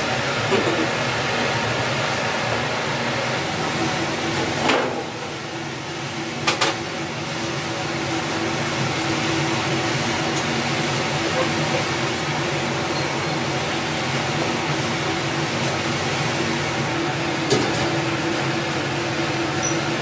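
Steady mechanical hum of kitchen ventilation, with a couple of short knocks about five and six and a half seconds in.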